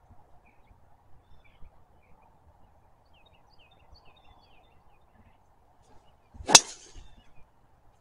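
A golf driver striking a ball off the tee: one sharp, loud crack about six and a half seconds in, with a short ring after it.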